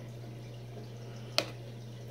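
A single sharp click about one and a half seconds in, over a steady low hum.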